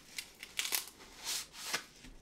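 Dry bamboo-leaf wrapping around a piece of pu'er tea being handled: several short, crisp crinkling rustles.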